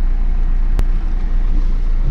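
Steady low rumble of a minibus's engine and road noise heard from inside the moving cabin, with a single sharp click a little under a second in.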